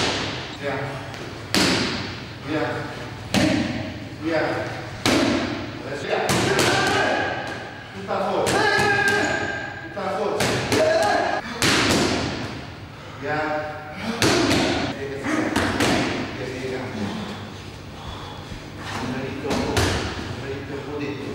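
Punches landing on leather focus mitts: sharp, repeated smacks, one every second or two, fewer near the end.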